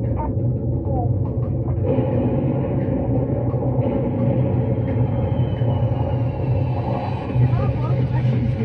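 Steady low rumble inside a moving elevator cabin as it rises, with a few faint voices over it.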